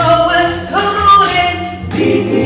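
A woman and a man singing a duet into microphones, with steady musical backing underneath.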